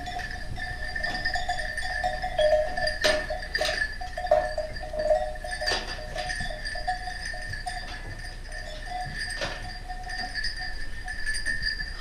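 A flock of Merino sheep and lambs moving and feeding in a barn pen, with a few sharp knocks. A steady high ringing tone runs underneath.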